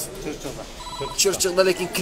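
A short electronic beep: a single steady tone lasting about a third of a second, about a second in.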